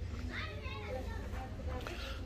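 Faint, distant high-pitched voices calling out, heard mostly in the first second, over a low steady rumble.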